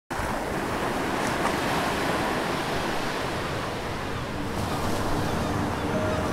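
Ocean surf: waves breaking and churning in a steady rush, starting suddenly.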